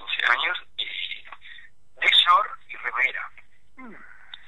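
A person speaking over a telephone line, thin and narrow-sounding, in short phrases with brief pauses.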